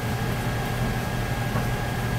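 Steady low hum with a hiss of background noise and no distinct event.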